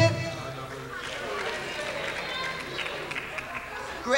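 Indistinct voices talking in a hall, with a low thump at the very start.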